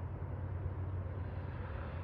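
Steady low background rumble outdoors, with no distinct events.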